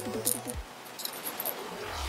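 A few faint, light clicks of small metal parts being handled as a folding stock adapter is fitted to an AR-15 lower receiver and its detent is set in place.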